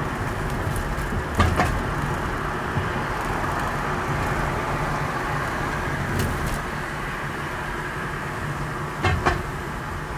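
Car driving on city streets, heard from inside the car through a dashcam: a steady rumble of engine and road noise. There are two short double knocks, one about a second in and one near the end.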